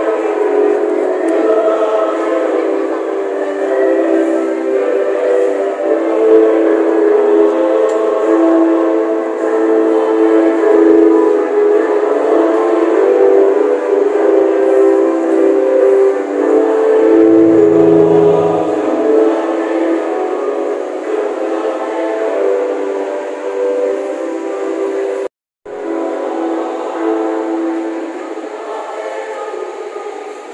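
Church choir singing a hymn in long held chords. The sound cuts out for a moment about 25 seconds in.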